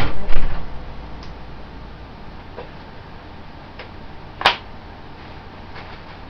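Sterile gloves being pulled on: a few light ticks and small handling noises, with one sharp snap about four and a half seconds in.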